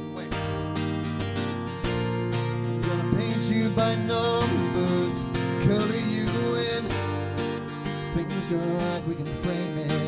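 Acoustic guitar being strummed in an instrumental passage of a song, with sustained chords throughout.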